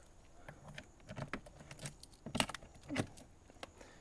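Keys jangling and a lock clicking as a key is worked in the lock of a metal exterior storage hatch, followed by the hatch door being opened: a few light, separate clicks and knocks, the strongest a little past the middle and about three seconds in.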